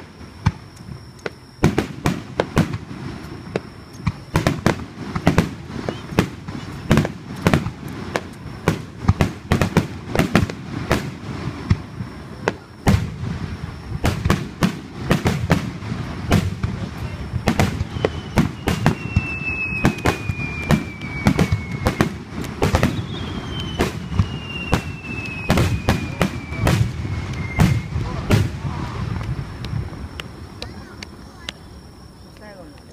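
Aerial firework shells recorded close up, bursting in quick succession: a dense run of sharp bangs over a continuous low rumble. Twice in the second half, a whistle glides downward for several seconds among the bangs.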